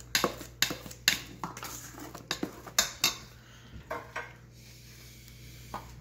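Metal spoon stirring thick chocolate cake batter in a stainless steel mixing bowl, clinking against the bowl's sides. The clinks come irregularly for about three seconds, then only a few more.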